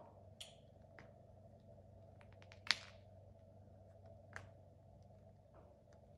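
A handful of faint remote-control button clicks over a low steady room hum, the sharpest about two and a half seconds in.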